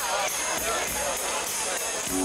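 Between-song hubbub at a live rock concert, picked up by a Hi8 camcorder microphone: a dense mix of crowd and stage noise with a few short gliding, whistle-like tones near the start and no steady music playing.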